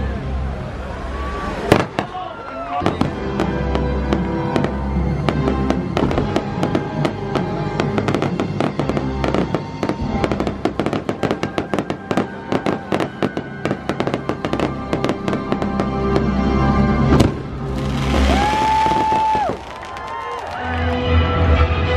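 Fireworks going off in quick succession, a dense run of crackling bangs with a single louder report about two seconds in and another near the end, over loud show music.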